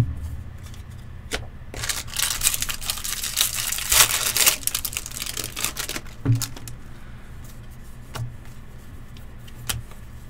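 A Bowman baseball card pack's wrapper being torn open and crinkled for about four seconds. A few short knocks follow as the cards are handled and squared.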